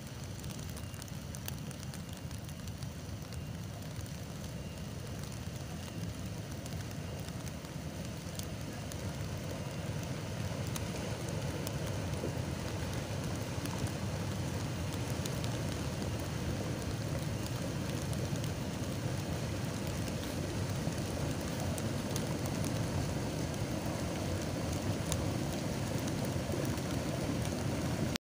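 Steady rushing noise with fine crackling from a steaming hot volcanic mudflow pouring down a river channel. It grows slightly louder toward the end.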